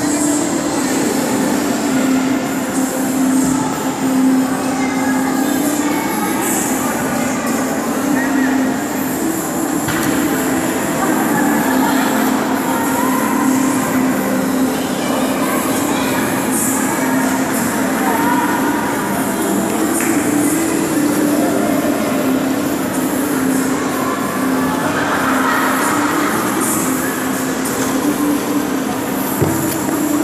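Loud, steady rink ambience: a continuous mechanical drone with a low hum running throughout, and indistinct voices of other skaters in the background.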